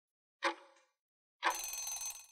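Quiz countdown timer sound effect: one tick about half a second in, then about a second later a short ringing bell that marks time up.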